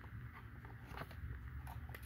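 Faint clicks and taps of a hard clear-plastic diecast package being handled, one about a second in and a few near the end, over a low steady hum.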